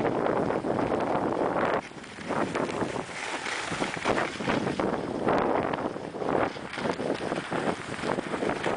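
Wind rushing over the camera microphone and skis scraping over packed, tracked snow on a downhill run, as an uneven hiss that dips briefly about two seconds in.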